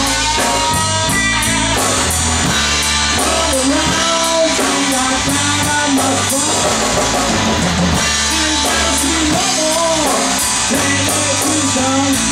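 Live blues-rock band playing an instrumental passage without vocals: electric guitar lines with bent notes over bass guitar and a drum kit.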